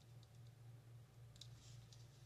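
Faint small clicks and a brief soft hiss from a plastic squeeze bottle of glue being pressed through its fine metal applicator tip, over a steady low hum. The clicks come singly in the first second and bunch together about one and a half seconds in, just before the hiss.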